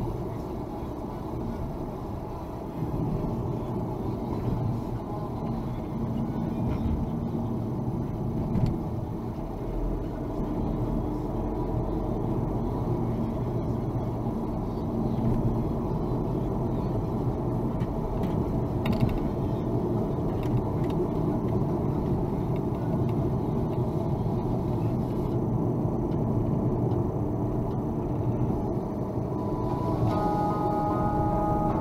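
Car running at road speed of about 60 km/h, heard from inside the cabin: steady engine and tyre noise, with occasional small clicks and rattles.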